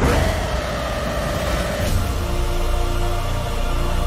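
Dramatic film-trailer music that comes in suddenly and loud over a deep low rumble. A held high note sounds for about two seconds, then a lower note is held to near the end.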